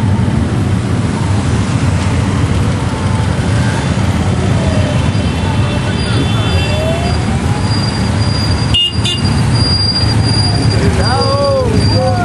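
Many motorcycles riding past in a long procession: a steady dense rumble of engines, with single bikes revving up and down as they pass.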